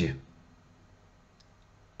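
A man's voice finishing a word, then quiet room tone with a faint click or two about halfway through.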